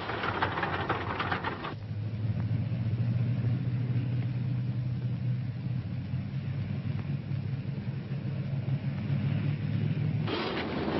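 A rough rushing noise for about the first second and a half, then a steady low mechanical drone, engine-like, on an old film soundtrack.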